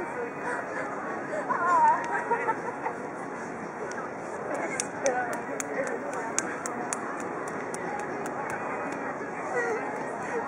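Indistinct voices talking in the background, with no clear words. A run of faint high ticks, about three a second, sounds through the second half.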